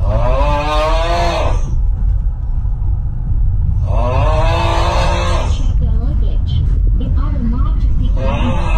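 Steady low rumble of a sleeper train running through the night. Over it come two long, drawn-out vocal sounds from a person, one at the start and one about four seconds in.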